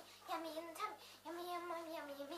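A young girl singing a made-up tune in held notes with no clear words, pausing briefly a little past the middle.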